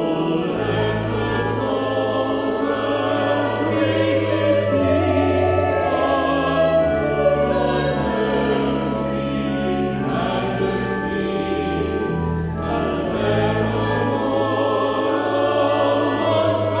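Small church choir of mixed voices singing, accompanied by a pipe organ that holds long, steady bass notes under the voices.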